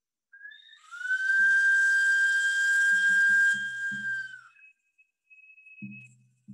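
A small hand-held whistle blown in one long, steady, breathy note, after a short higher opening note, then a faint higher note near the end. Soft low beats, about four a second, come in under it about halfway through.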